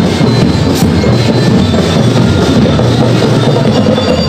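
Marching drum-and-lyre band playing loud: a steady beat of drums with bell-lyre tones ringing over it.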